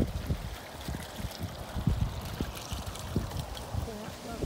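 Small bubbler fountain in a stone-ringed basin, its jet splashing and gurgling unevenly into the pool.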